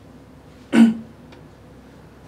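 A man's single short cough, about a second in.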